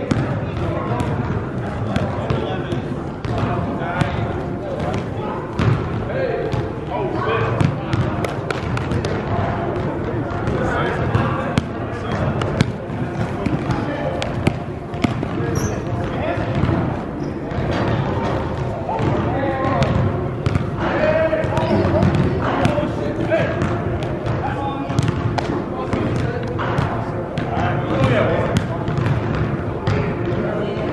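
Basketball dribbled and bouncing on a hard indoor gym court, with sharp bounces scattered throughout, over people's voices in the large hall.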